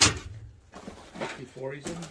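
A single sharp metallic clunk as a dented metal Plymouth headlight bezel is dropped onto a pile of junk parts, followed by faint low voices.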